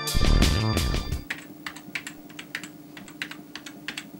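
A loud, low musical sting in the first second, then typing on a computer keyboard: a quick, irregular run of keystroke clicks, several a second, over a faint steady hum.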